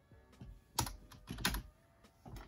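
A few separate computer keyboard keystrokes, sharp clicks with a dull thump, spaced about half a second apart.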